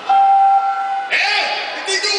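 A performer's voice in a large arena: a steady held note for about a second, then high-pitched, quickly bending vocal sounds.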